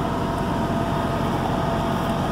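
Caterpillar 3406E inline-six diesel engine idling steadily, with a faint steady whine over the rumble.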